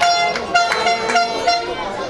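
A horn sounding a string of short toots at a steady pitch.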